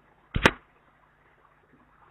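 A single sharp click about half a second in, over the faint hiss of a video-call line.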